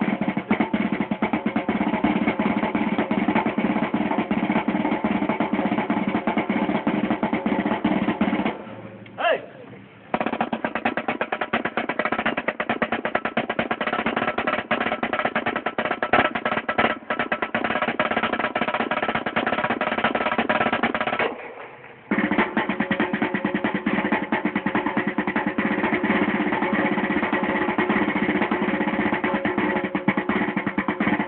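Marching snare drum played in fast, dense rolls and rhythmic patterns, with two brief pauses about nine and twenty-one seconds in.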